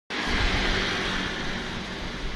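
Steady outdoor background noise, a continuous rush with a low rumble, cutting in abruptly right at the start.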